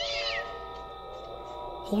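A short, high animal cry that rises and then falls in pitch just at the start, over a steady background music drone, as a sound effect in a dramatised woodland scene.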